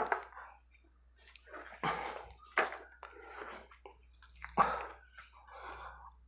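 Irregular handling noises as a small device on a board base is picked up and turned over: scrapes and rustles with a few knocks, the sharpest about two-thirds of the way in.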